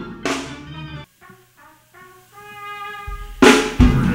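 Live gospel band: a single drum hit rings out and fades, then a few soft pitched notes and a held chord. About three and a half seconds in, the drum kit crashes in and the full band, horns included, starts playing loudly.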